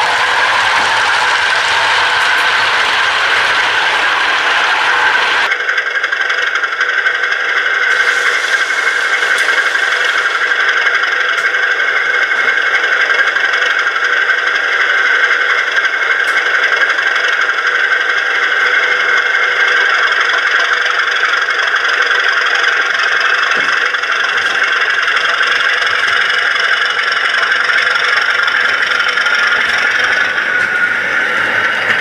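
Sound of a model British Rail Class 37 diesel locomotive running steadily, with a high whistle held over the engine noise. The sound changes abruptly about five seconds in.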